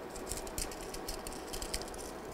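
Faint, light clicking and rustling of hands handling the small parts of an electronics kit: circuit-board pieces, loose components and a plastic parts bag.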